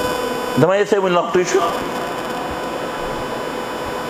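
A steady hum and hiss with a few faint constant tones, continuing evenly once a short spoken phrase ends about a second and a half in.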